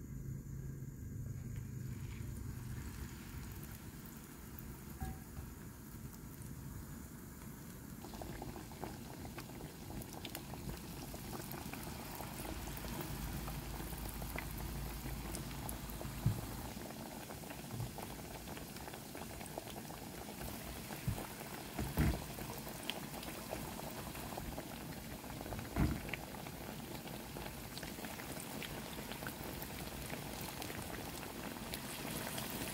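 Battered banana fritters deep-frying in hot oil in a pan: a steady sizzle and bubbling that grows fuller about eight seconds in, with a few sharp clicks and pops along the way.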